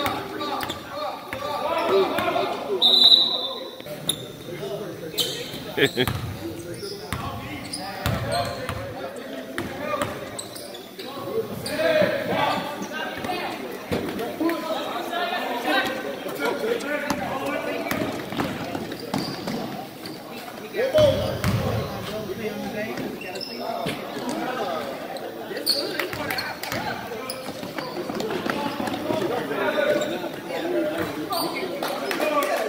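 Basketball bouncing on a gym floor as it is dribbled during play, with voices and shouts echoing around the large hall.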